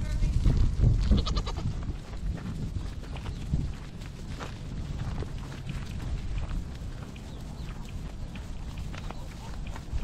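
Nigerian Dwarf goats out on pasture, one bleating briefly about a second in. Under it is a low rumble, loudest in the first two seconds, then fainter.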